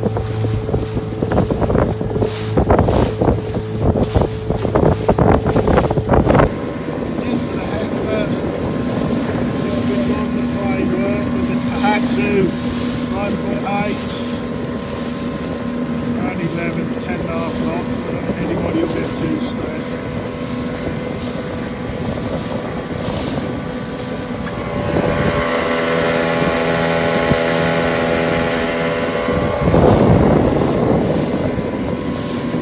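Small outboard motor pushing an inflatable boat along at a steady note, with wind buffeting the microphone hard in the first six seconds. About six seconds in, the buffeting stops abruptly. Near the end the engine note grows louder and fuller.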